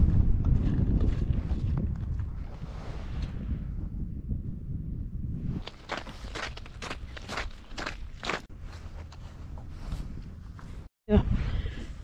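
Wind buffeting the microphone as a low rumble, then footsteps on snowy, icy pavement about halfway through, coming two to three a second.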